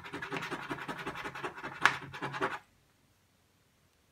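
A coin scratching the coating off a paper scratch lottery ticket in quick, rapid back-and-forth strokes, one stroke sharper than the rest, stopping about two and a half seconds in.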